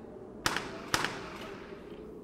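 Two sharp knocks about half a second apart, each fading briefly, over faint background noise.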